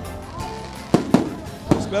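Fireworks going off: three sharp bangs in the second half, over background music.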